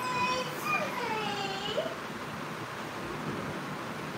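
A brief high-pitched voice in the background, gliding down and then back up over the first two seconds. After it there is only a steady room hum.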